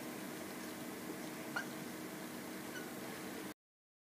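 Whiteboard marker writing digits, with faint strokes and a short squeak about one and a half seconds in, over low room tone; the sound cuts off to silence near the end.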